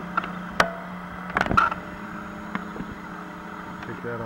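A few sharp clicks and knocks over a steady low hum, with the loudest about half a second in and a quick cluster about a second and a half in.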